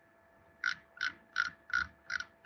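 Computer mouse scroll wheel clicking as a page is scrolled: four evenly spaced clicks, about three a second, starting just over half a second in.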